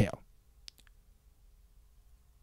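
The tail of a man's spoken word, then quiet room tone with one faint short click a little under a second in.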